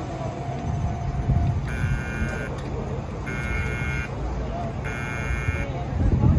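An electronic warning buzzer beeping three times, each a steady tone just under a second long, repeating about every second and a half, over a low steady hum and people talking.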